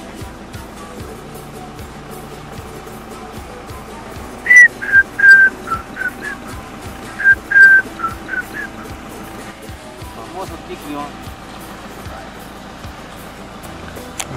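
Quiet background music, with a run of loud, short whistled notes in two phrases about four to nine seconds in, each note dipping slightly in pitch.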